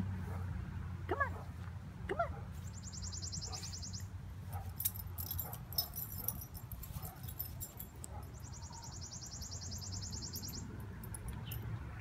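A golden retriever gives two short, high yips about a second apart early on, excited by rabbit scent. Underneath is a steady low hum, and twice a rapid high pulsing buzz comes in for a second or two.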